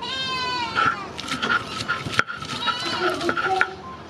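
A goat bleating: one long wavering call at the start, then shorter calls later on. A sharp knock of the stone roller on the grinding stone comes about two seconds in.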